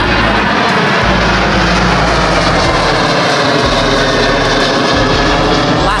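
Alaska Airlines passenger jet airliner flying over, loud and steady, with a whine of jet engine tones over its rushing noise.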